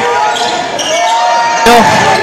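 Basketball bouncing on a hardwood gym floor during live play, with a sharp knock near the end.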